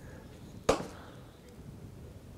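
A single sharp knock a little under a second in: a wooden dibber set down on a plastic potting tray. The rest is quiet room tone.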